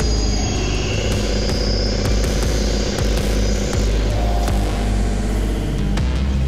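Modular synthesizer music: a dense, noisy electronic texture over a heavy, steady bass drone, with faint clicks running through it.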